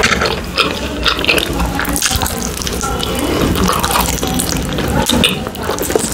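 Close-miked chewing and wet mouth sounds of a person eating saucy fried chicken: a steady run of short, irregular smacks and crunches.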